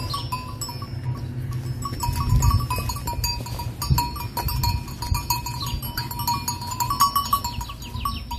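Bells on several grazing cows clinking and ringing irregularly as the animals move. Each bell gives a different note, over a low rumble.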